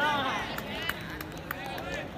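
Cricket players' voices calling out on the field: a loud drawn-out shout at the start and more calling near the end, with a few sharp clicks in between.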